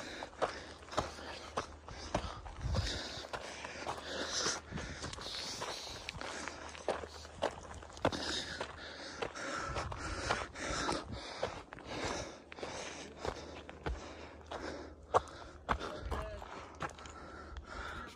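Footsteps on a rocky, gravelly dirt trail, an irregular run of crunches and scuffs, with the walker's breathing.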